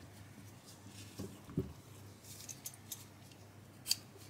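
Roasted beetroots being handled with a rubber-gloved hand in a plastic tub: two soft knocks, a few light ticks, and a sharper click near the end.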